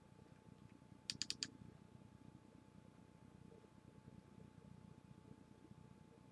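Four quick clicks at a computer, close together about a second in; otherwise near silence.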